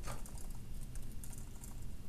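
Computer keyboard typing: an uneven run of quick keystroke clicks.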